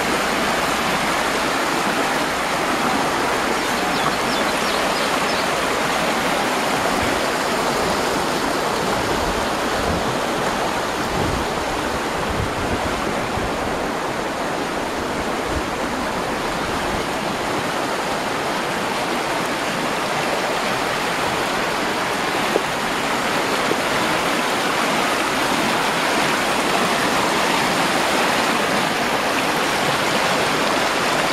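Small river rushing over shallow rapids formed by dolomite steps, running high with spring flood water: a steady, loud rush of white water.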